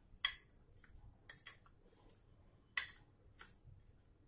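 A metal spoon clinking and scraping against a glass bowl while a cheese-and-onion stuffing is stirred: a few separate short clinks, the loudest about a quarter second in and near three seconds.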